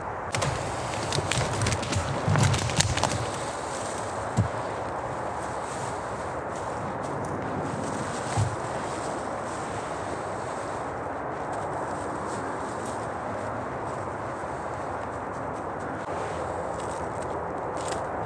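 Dry bracken fronds rustling and crackling as they are handled for the first few seconds, then a steady, even outdoor hiss with a couple of soft knocks.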